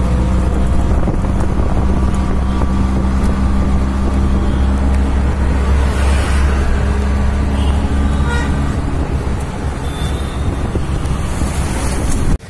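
Auto-rickshaw engine running under way, a loud steady low drone with road and wind noise through the open sides.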